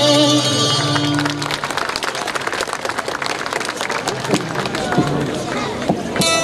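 A group of folk singers holds a final chord that breaks off about a second in, followed by several seconds of audience applause.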